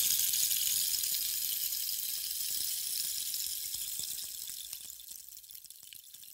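Rushing water of a waterfall, a steady high hiss that slowly fades out over the second half.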